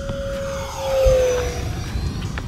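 Arrows F-86 Sabre RC jet's electric ducted fan whining at full throttle on a low pass, growing louder to a peak about a second in, then dropping in pitch as it goes by.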